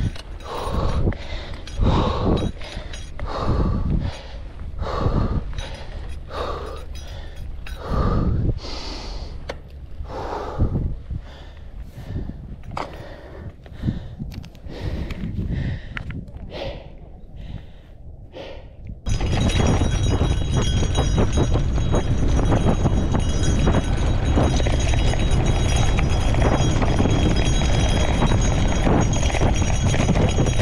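A cyclist's heavy, rhythmic breathing during a hard climb on a gravel bike, about one breath a second and growing weaker. About 19 s in it gives way suddenly to steady wind rush on the handlebar-height camera microphone and tyre rumble on a fast dirt descent.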